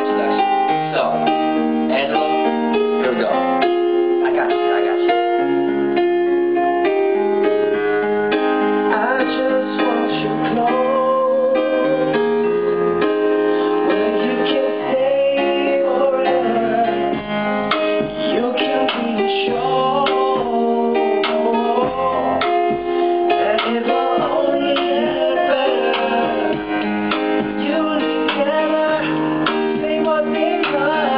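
Acoustic guitar and electronic keyboard playing a slow I–V–vi–IV chord progression in A-flat, with a wavering melody line above the chords from about ten seconds in.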